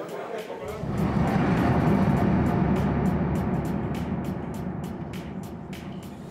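Bar room sound with background music and a murmur of voices. A low rumble swells about a second in and slowly fades, and light clicks come over the second half.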